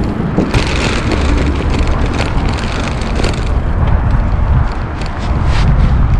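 Wind buffeting an action camera's microphone on a moving bicycle: a loud, steady low rumble over the hiss of the tyres rolling on the road.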